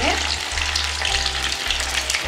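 Stuffed bread rolls deep-frying in hot oil: a steady crackling sizzle of oil bubbling around them.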